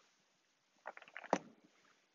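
Faint handling sounds of small objects on a cloth-covered altar: a quick run of little clicks and taps about a second in, ending in one sharper click.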